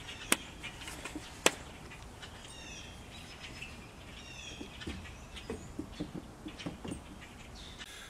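Small birds chirping in two short runs of calls a second or so apart, over a faint outdoor background. Two sharp clicks come in the first second and a half, with a few soft knocks later on.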